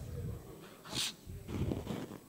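Room sound of a meeting chamber: a faint, indistinct murmur of voices, with one short hiss about a second in.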